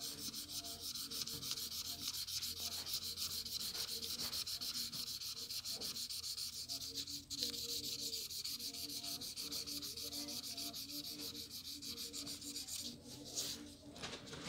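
A highlighter's felt tip scribbling quickly back and forth on paper, a steady scratchy rubbing of many short, even strokes as a sheet is coloured in.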